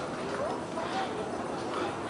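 Footsteps on a metal grating walkway, walking at an even pace, with faint voices of other people in the background.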